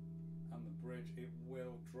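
Electric guitar with P-90 pickups, a chord ringing out through an amp. Its upper notes are damped about half a second in, and a steady low tone carries on underneath.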